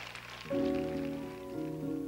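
A brief crackling hiss, then about half a second in an arpeggiated piano and an acoustic guitar start playing a soft introduction, with notes entering one after another.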